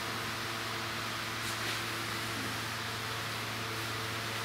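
Steady background hiss with a constant low hum, unchanging throughout: room tone with no voice.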